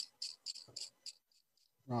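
Quick, regular scratchy strokes of a soft pastel stick being worked by hand, about five or six a second, dying away about a second in.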